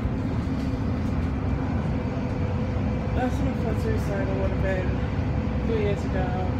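Steady low rumble of a bus's engine and running gear heard inside the passenger cabin. Voices talk in the background from about halfway through.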